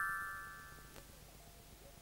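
The fading ring of a bell-like chime sound effect, the cartoon's sound for part of the creature magically disappearing. It dies away over about the first second.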